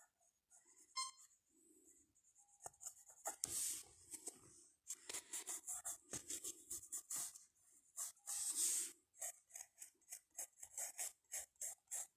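Pencil sketching on paper: a fast run of short, scratchy strokes that starts about two and a half seconds in, after a near-quiet start.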